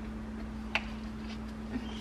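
Quiet kitchen with a steady low hum, and a single light click about three quarters of a second in as the top of a salt and pepper grinder is handled.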